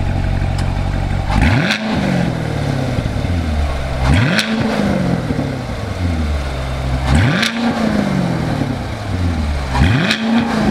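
C7 Corvette's 6.2-litre LT1 V8 idling, then revved four times, about every three seconds. Each rev climbs quickly and dies back slowly to idle.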